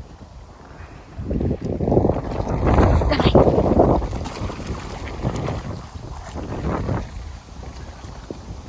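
Wind buffeting a phone microphone: a low, gusty rumble that swells about a second in, is loudest for the next few seconds and then eases off.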